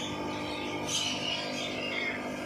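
Birds chirping and calling, with a clearer high call about a second in.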